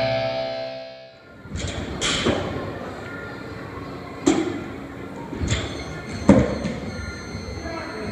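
Rock music fades out in the first second, then several irregular thuds of an athlete landing box jumps on a wooden plyo box and the gym floor, the loudest near the end, over the murmur of a gym.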